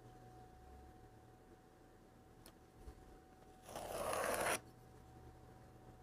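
A single scrape of just under a second, about four seconds in, as a wooden straightedge is worked across a textured clay slab on a wooden board to trim it straight.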